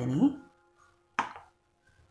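A voice trailing off at the start, then one sharp knock a little over a second in, over a faint steady hum.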